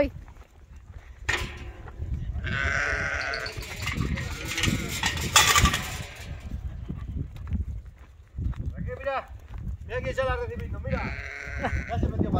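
Young lambs bleating a few times while being carried, over a low rumble, with a loud burst of rustling noise about halfway through.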